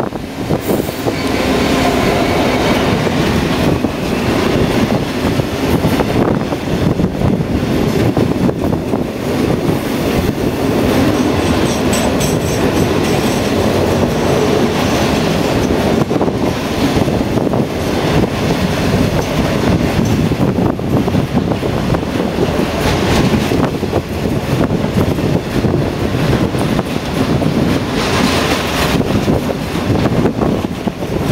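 An EWS Class 66 diesel locomotive, with its two-stroke EMD V12 engine, runs through close by, followed by a long train of bogie hopper wagons rumbling and clattering over the rails.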